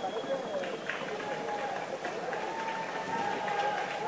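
Crowd voices murmuring in an arena, with the quick, irregular hoofbeats of a gaited horse working on dirt.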